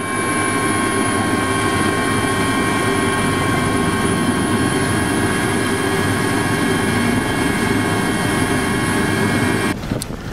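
Passenger aircraft's engines running steadily, heard from inside the cabin: a dense rush with a steady whine of several high tones on top. It cuts off suddenly near the end.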